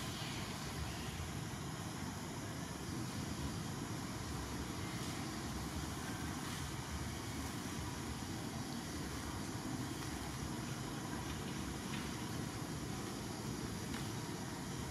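Steady outdoor background noise: a low, fluctuating rumble under an even hiss, with no distinct events.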